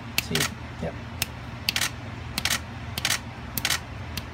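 Finger snaps, each answered a split second later by the shutter of a Canon 1DX DSLR firing: the Miops Smart Trigger's sound mode hears the snap and trips the camera. The sharp clicks come in quick pairs several times, over a steady low hum.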